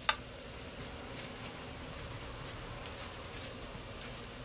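Roasting potatoes sizzling in hot bacon fat in a glass baking dish, a steady hiss, as they are turned with metal tongs. A sharp tick just after the start and a few faint ticks come from the tongs on the potatoes and dish.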